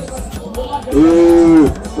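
A man's voice holding one long note for under a second, about a second in, dropping in pitch at its end.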